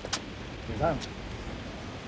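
Low steady rumble of a vehicle, with two sharp clicks, one at the start and one about a second in. A short vocal sound comes just before the middle.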